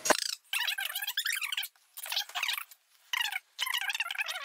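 Cardboard rubbing and squeaking against cardboard as the flaps and inner box of a large game box are pulled open, in four or so short scratchy stretches.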